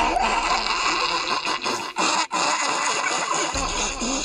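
Cartoon villain's evil laugh, harsh and raspy, running on with a couple of brief breaks near the middle.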